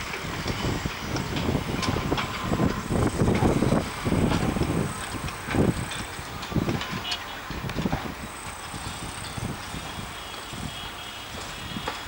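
Rumble of heavy construction machinery, rising and falling irregularly, with scattered short knocks.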